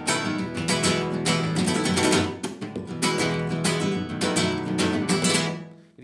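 Nylon-string guitar strummed with the open hand in a fast flamenco-Latin rhythm, down with the whole hand and up with the thumb, with scraped strokes worked in like drum fills. The strumming stops and the last chord dies away near the end.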